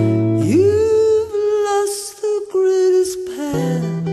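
Music with guitar: a chord at the start, then a single melody note that slides up steeply and is held for about two and a half seconds, with new chords and short downward slides near the end.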